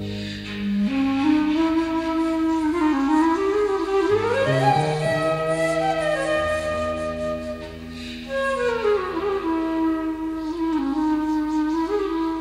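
Slow, meditative flute melody over long, held low bass-guitar notes; the flute slides up in pitch about four seconds in and glides back down near eight to nine seconds.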